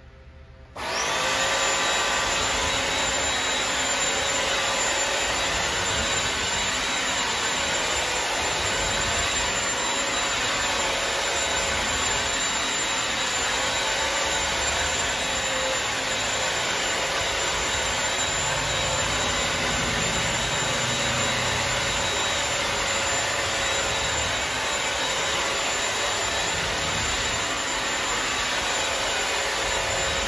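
Bissell CrossWave wet-dry floor cleaner switched on under a second in, then running steadily with a high whine as it vacuums and washes the floor at the same time.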